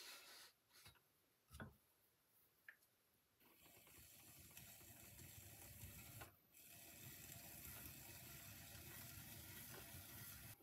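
Faint steady scraping of a pointed tool cutting into leather-hard clay at the base of a pot turning on a pottery wheel. It begins a few seconds in and breaks off briefly just past halfway. A few light knocks come before it.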